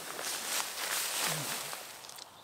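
Dry fallen leaves rustling and crackling as a person moves over them and lies down in the leaf litter. It is a dense crackling rustle that eases off toward the end.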